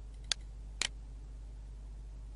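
Computer mouse clicking: a single click about a third of a second in, then a quick double click near the one-second mark, over a steady low hum.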